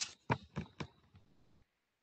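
Handling of a laptop as it is turned around: four sharp clicks and knocks about a quarter second apart, followed by a few fainter ticks.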